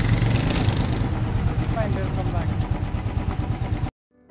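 Motorcycle engine idling steadily, loud and close, with a low rumble. It stops abruptly near the end.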